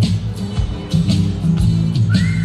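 Dance music with a strong bass line and a steady drum beat with cymbal hits.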